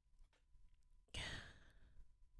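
A woman sighing close to the microphone: one breathy exhale a little over a second in, falling in pitch as it fades.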